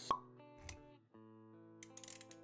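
Intro sound effects over background music: a sharp, short pop just after the start, the loudest sound, then a softer hit with a low thud. The sustained music notes break off briefly and come back about a second in.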